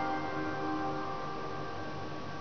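The last notes of the song's instrumental karaoke backing track ringing out, several held bell-like tones slowly fading.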